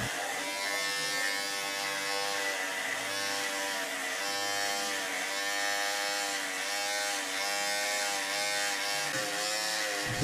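An electric hair clipper running with a steady buzz whose pitch wavers slightly.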